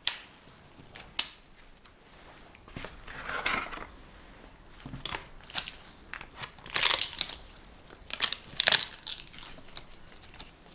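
Parchment paper crinkling and rustling in several short spells as gloved hands handle the baking-paper lining around a pressed graham-cracker crust. Two sharp clicks come first, one at the start and one about a second later.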